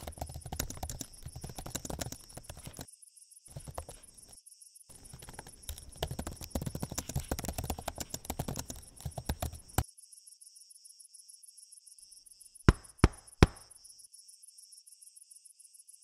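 Laptop keyboard typing in quick runs with short pauses, stopping a little under ten seconds in, over steady chirping of crickets. About three seconds later come three sharp knocks in quick succession, the loudest sounds here.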